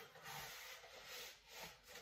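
Faint rubbing and scraping of cardboard and plastic wrapping as a wrapped e-bike bottle battery is slid out of its narrow cardboard box.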